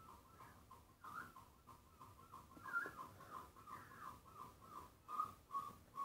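Faint chirping from a small bird: a long run of short, high repeated notes, about four a second.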